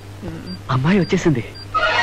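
Bedside medical monitor giving short, high beeps at a steady rate of about two a second, over a steady low hum. A man's voice calls out in the middle, and music comes in near the end.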